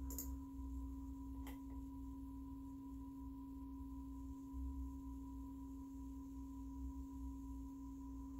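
A steady low hum with a fainter higher tone above it, the kind of constant drone given off by a household appliance or electronics. A faint click about a second and a half in.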